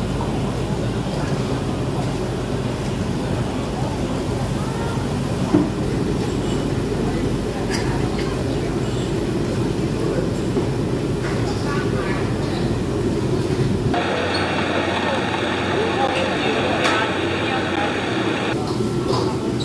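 Busy restaurant ambience: a steady rumble with indistinct chatter and an occasional sharp clink of tableware. The background changes abruptly near the end, becoming thinner and brighter.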